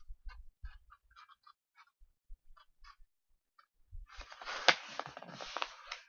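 Sheet of construction paper being handled and folded: a few faint crinkles, then about four seconds in, louder rustling with a sharp crackle as the fold is pressed down.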